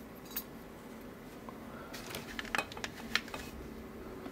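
Light metal clicks and clinks as a Kenuard pin-in-pin mortise cylinder and its follower rod are handled while the driver pins are taken out. There are a handful of sharp ticks, most of them in the second half.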